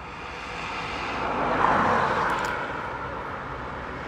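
A vehicle passing by: a rushing noise that swells to a peak about halfway through and then fades away.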